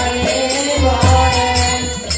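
Devotional kirtan: voices singing a chant over low drum strokes and hand cymbals struck about three times a second.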